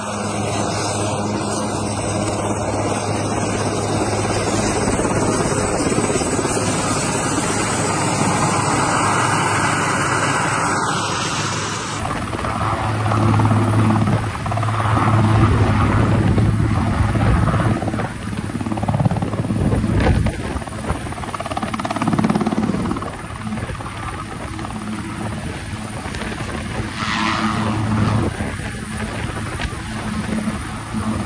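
A large military transport helicopter running close by, its turbine whine and rotor beat steady; about twelve seconds in the recording changes to the helicopter hovering low, louder and gusting with the rotor downwash.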